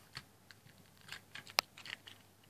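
Fidget cube's buttons and switches clicking under the fingers: a handful of scattered light clicks, the sharpest about one and a half seconds in. The owner says the cube is kind of broken.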